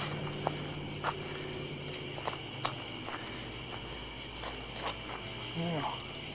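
Steady evening chorus of insects, a continuous high chirring in several pitches, with a few faint clicks and steps scattered through it.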